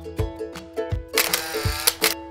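Background music: a plucked-string instrumental with a steady beat. In the second half a loud, noisy swish lasting under a second rises over it, an added shutter-like transition effect.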